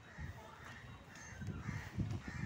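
Crows cawing a few times, with irregular low thuds growing louder in the second half.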